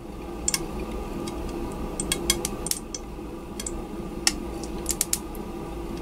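Irregular small sharp pops and crackles, about a dozen over a few seconds, over a steady low hum, from a quartz tube being rinsed with hydrochloric acid. They come from the acid reacting with magnesium silicide that the red-hot magnesium is thought to have made with the glass, giving off silane.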